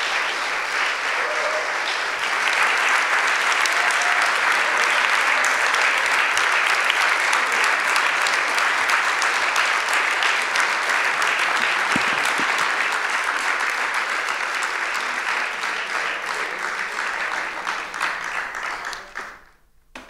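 An audience in a lecture hall applauding at the end of a talk: sustained clapping that builds over the first couple of seconds, holds steady, then gradually fades and dies away just before the end.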